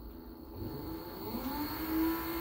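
A lapidary bench's industrial sewing-machine motor spinning up after being switched on. Its whine rises in pitch for about a second, then holds steady as the belt-driven lap disc comes up to speed.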